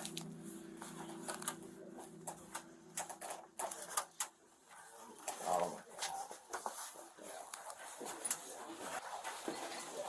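Scattered knocks and rattles of a ladder as a person climbs down it from an attic while it is held steady, with a steady low hum for the first few seconds.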